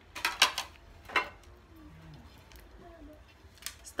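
A spoon clinking against a rice bowl and plates as rice is served: a quick run of clinks at the start, another about a second in, and a fainter one near the end.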